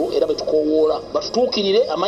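Speech only: a person talking continuously, with the sound of a broadcast or recorded clip.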